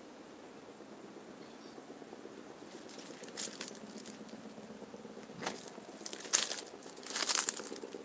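Faint hiss, then from about three seconds in irregular close rustling and crinkling crackles, several in quick succession near the end.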